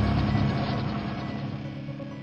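Produced logo-sting sound effect: a rapid, even mechanical ratcheting click over a steady low tone, the whole fading away.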